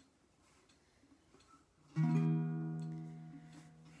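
Baritone ukulele: one chord strummed about halfway in and left to ring out and fade, after a near-quiet start.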